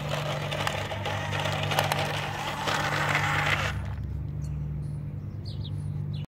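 Huina radio-controlled toy dump truck driving over gravel: its electric motor and gearbox whirring and small stones crunching and clicking under the tyres, cutting off abruptly about three and a half seconds in as the truck stops. A few faint bird chirps follow, over a steady low hum.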